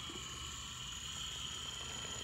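Faint, steady high-pitched whine of an Exo.us MOA RC rock crawler's electric drive motors as it creeps over a rock, growing slightly louder near the end.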